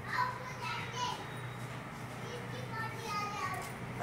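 Children's voices at a distance, short calls and chatter while they play, over a faint low steady hum.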